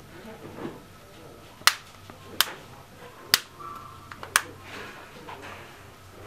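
Four sharp snap clicks, spaced about a second apart, as a Galaxy Note 2 replacement battery cover's clips latch into place on the back of the phone.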